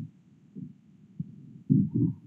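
A few soft, muffled low thumps, irregular, with the last two close together near the end.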